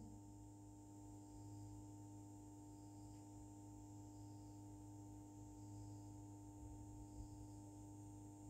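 Near silence: a faint, steady hum.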